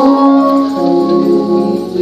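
Live church praise music: sustained chords held on and changing a few times, with no drum hits standing out.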